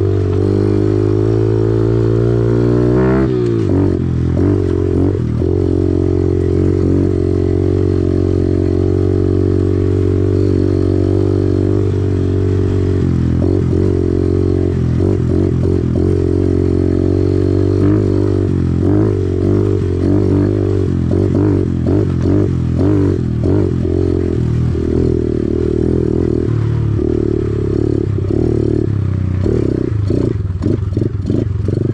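Small four-stroke single-cylinder pit bike engine, heard from the bike itself, climbing in pitch over the first three seconds and then dropping suddenly as it shifts up. It then pulls along at a steady speed. Through the second half, irregular knocks and rattles come from the bike bouncing over the rough trail.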